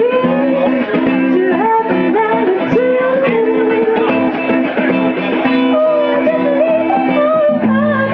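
Live band music led by guitar: a melody line of bending, gliding notes over sustained lower chords, playing without a break.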